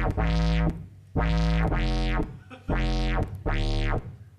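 Low square-wave synth tone from a browser Web Audio patch, its lowpass filter swept open and shut by an LFO so each note swells bright and dulls again. It comes in short notes of about half a second, around six in a row, with the pitch jumping between them as a second LFO modulates it.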